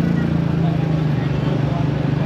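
The small motorcycle engine driving a motorized pedicab (becak motor) runs steadily while under way, heard from the open passenger seat in front, with street traffic around.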